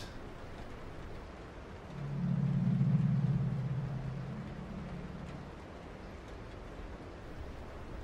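A low ambient synth drone from the background score swells in about two seconds in and fades away a few seconds later, over a faint hiss.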